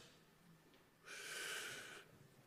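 A man's single breath drawn in close to a lectern microphone, a soft hiss about a second long beginning halfway through, between phrases of speech.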